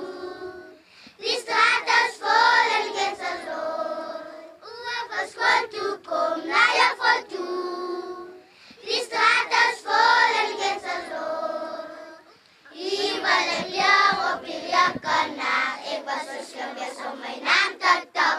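A group of children singing together, in phrases of about four seconds with short breaks between them.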